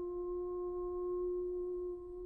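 Soprano holding one long, steady note without vibrato, nearly a pure tone with only faint overtones.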